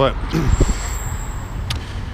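Road traffic on a city street, with a thin, steady, high-pitched whine lasting about a second in the middle and a short low rumble near its start.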